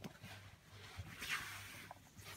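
Faint rustling of a foil Pokémon booster pack being handled as a hand picks it up from the stack, loudest a little past the middle.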